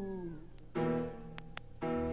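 Live rock band: a held, wavering vocal note slides down and dies away in the first half second, then the band sounds a sustained chord, followed by a second chord about a second later.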